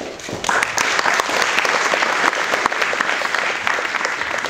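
Audience applauding: a dense patter of clapping that swells about half a second in and holds steady.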